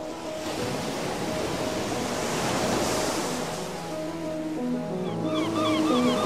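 Ocean surf washing on a shore, swelling and easing, under soft electronic music with sustained synth notes. Near the end a run of short, quick chirps comes in.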